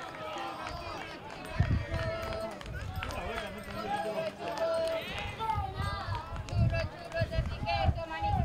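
Several voices shouting and calling out across an outdoor football pitch in short, high-pitched cries, with a few dull low thumps.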